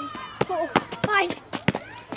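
A football being kicked up and bouncing on paving slabs: a quick run of sharp thuds, about six in under two seconds. A child's high voice sounds over them.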